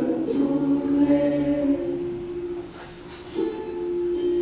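A group of adults singing a Finnish song together as a vocal warm-up, unaccompanied, holding long notes. There is a short break about three seconds in before the voices come back in.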